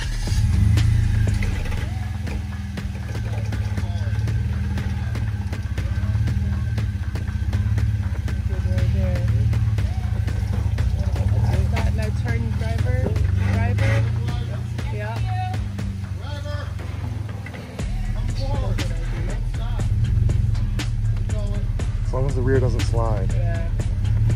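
Engine of a tube-chassis rock-crawling buggy running at low revs as it crawls up a rock ledge. It is a steady low rumble that swells and eases with the throttle and dips briefly about two-thirds of the way in.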